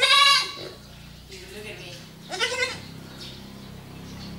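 Young goat kid bleating twice: a loud bleat right at the start and a second about two and a half seconds in.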